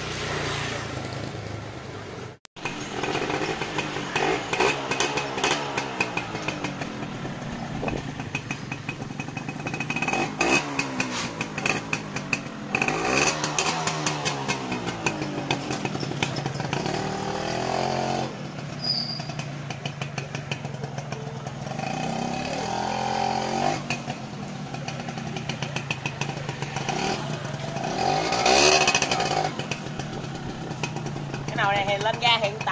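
Yamaha 125ZR (Yaz) two-stroke single-cylinder motorcycle engine idling and being revved again and again, its pitch climbing and falling with each twist of the throttle.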